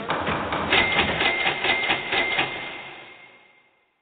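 Printer sound effect: a fast rattle of about eight strokes a second with a steady high tone, fading away near the end.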